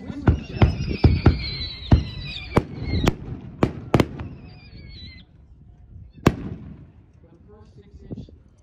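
6-inch whistling canister shell bursting: whistles sliding slowly down in pitch for about five seconds, cut through by a rapid string of sharp bangs, with one last loud bang about six seconds in.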